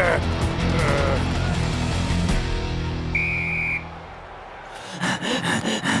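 Cartoon soundtrack music with a single short referee's whistle blast a little past halfway, signalling the start of play. The music then drops away for about a second before a beat comes back in.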